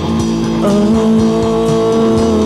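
Alternative rock band recording: sustained guitar chords that change about half a second in, over drums with regular cymbal hits.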